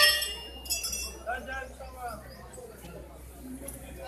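Hanging brass temple bells struck, ringing and fading away, with a second lighter strike under a second in.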